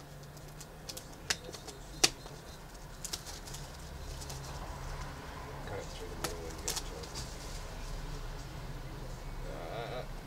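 Plastic shrink wrap being torn and peeled off a cardboard trading-card box: crinkling and rustling with a few sharp clicks, the loudest about two seconds in.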